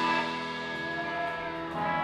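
Live band music: held, ringing notes in a quieter stretch of a jam, with no drum hits, growing louder near the end.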